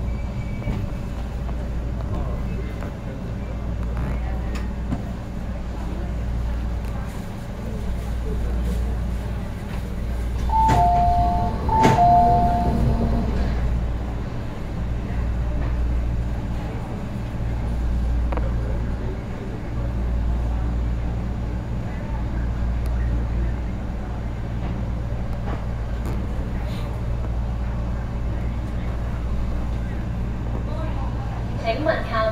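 Metro Cammell EMU standing at a station platform, its on-board equipment keeping up a steady low hum. About ten seconds in, a two-note chime, high then low, sounds twice in quick succession.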